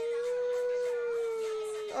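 A man's long drawn-out "ummm" of indecision: his voice rises in pitch, then is held on one high steady note for about two seconds and stops abruptly.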